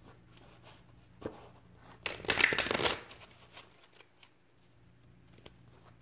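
A deck of oracle cards being shuffled by hand: one dense flurry of rapid card flutters lasting about a second, a couple of seconds in, with a few light taps of cards before and after.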